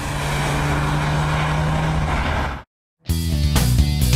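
Peugeot 207 THP's 1.6 turbo four-cylinder running at steady speed, a constant engine note over road and tyre noise. About two and a half seconds in it cuts off abruptly, and after a short silence rock music with electric guitar starts.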